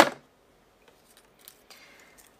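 Small objects handled on a tabletop: one sharp click or snap right at the start, then a few faint ticks.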